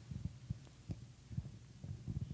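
Handheld microphone being handled: soft, irregular low thumps over a faint steady hum.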